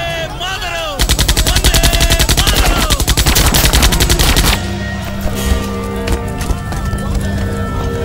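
Film battle soundtrack: men shouting, then about a second in a long burst of rapid automatic gunfire, roughly ten shots a second, that stops suddenly after some three and a half seconds. A steady music drone with scattered impacts follows.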